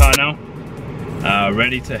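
Electronic dance music cuts off abruptly just after the start, leaving a low steady hum inside a car cabin; a man starts speaking about a second later.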